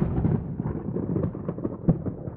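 A deep, thunder-like rumble fading away, with scattered crackles and pops through it and one sharper pop near the end.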